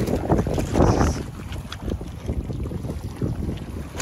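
Wind buffeting the microphone over choppy water lapping at a rocky shore, with splashing from a dog swimming in the shallows. A louder rush of noise comes about a second in.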